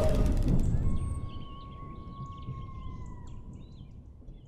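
The low tail of a logo sting's impact fades out over the first second, giving way to outdoor nature ambience. In that ambience, birds chirp and one long, steady high tone holds for about two seconds before dipping slightly and stopping.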